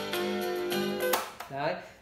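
Music played from a cassette tape through a Sharp QTY1 stereo boombox's built-in speakers, stopping with a click about a second in as the deck is stopped. A man's voice follows near the end.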